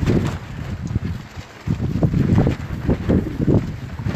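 Wind buffeting the microphone in gusts, a loud rumble that swells and drops, dipping briefly about one and a half seconds in.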